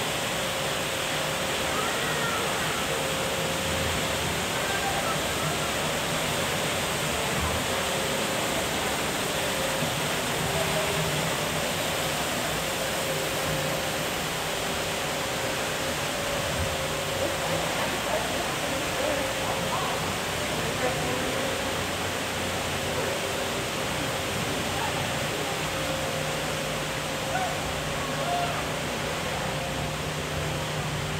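Steady rushing ambient noise with a faint low hum, and faint voices murmuring now and then.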